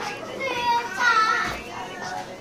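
A child's high-pitched voice calling out or vocalizing without clear words, loudest about a second in.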